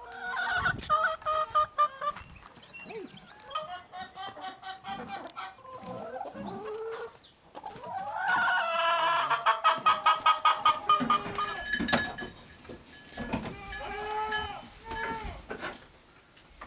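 Chickens clucking and calling, with one long drawn-out, pulsing call from about eight to eleven seconds in, the loudest part. A single sharp knock about twelve seconds in.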